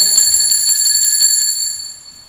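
A small altar bell shaken rapidly, its clapper striking quickly to give a bright, high jangling ring that fades away near the end.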